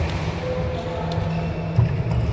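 Sports hall background noise: a steady low hum with a short sharp knock near the end.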